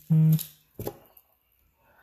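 A woman's short 'mm-hmm', then about a second in a single sharp click followed by a few faint ticks of small objects being handled, then quiet.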